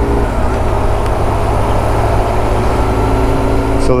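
Motorcycle cruising at freeway speed: a steady, unbroken mix of engine, wind and road noise, heavy in the low end.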